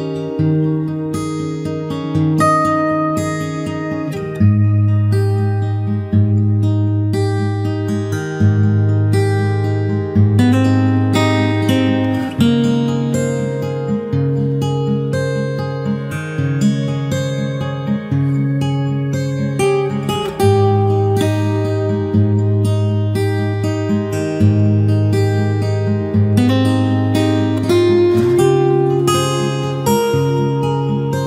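Instrumental acoustic guitar music, with the chord and bass note changing about every two seconds.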